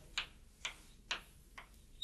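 Chalk striking a chalkboard during writing strokes: four short taps, about half a second apart.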